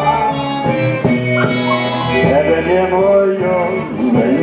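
Live band playing dance music: a melody line moves over a steady bass, without a pause.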